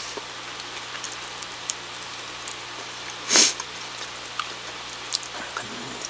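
Quiet chewing of bread with a few faint mouth clicks over a steady low hum, and one short, loud breathy hiss about three and a half seconds in.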